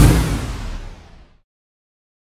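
Whoosh transition sound effect with a deep rumble underneath, loudest at the start and fading away over about a second and a half.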